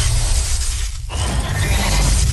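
Shattering, crashing sound effect over a heavy bass music track, with noise filling all registers. The noise briefly thins about halfway through.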